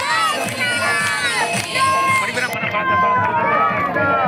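Crowd of many voices talking and calling at once, overlapping and unintelligible. A little past halfway the sound turns duller as the high end drops away.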